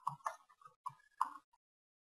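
Faint computer-keyboard typing: about five or six quick keystrokes in the first second and a half, then it stops.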